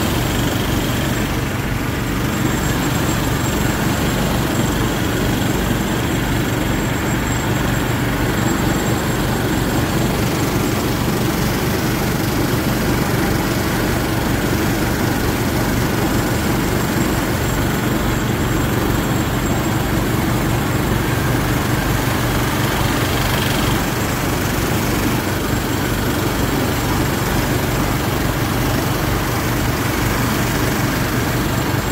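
Homemade leaf blower driven by a Briggs & Stratton 5 hp single-cylinder engine, running steadily at a constant speed under the load of the blower fan.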